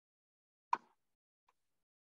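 Near silence on a video call, with one short pop a little under a second in and a faint tick after it.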